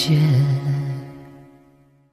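Closing bars of a drama's opening theme song: a low held note with a slight waver in pitch, likely a sung note, over sustained chords, fading out over the last second.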